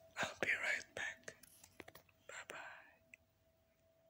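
Soft whispering and breathy sounds close to the microphone, in two short spells, with a few small sharp mouth clicks between them. A faint steady tone runs underneath.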